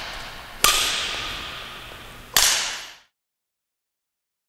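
Two sharp cracks of a badminton racket striking a shuttlecock, about a second and a half apart, each ringing on in the echo of a large hall. The sound cuts off suddenly about three seconds in.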